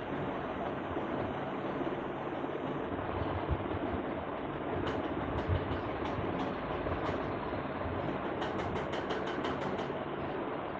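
Steady rushing background noise with a low hum underneath, broken by two soft thumps around the middle and a quick run of faint clicks near the end.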